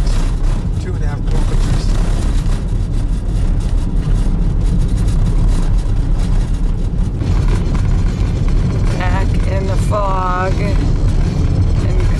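Steady low road rumble of a campervan driving on a gravel road, heard from inside the cab. A person's voice sounds briefly about nine to ten and a half seconds in.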